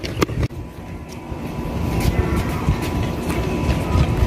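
A few quick running footsteps on a rubber track at the start, then a steady low rumble that builds toward the end, with faint scattered taps.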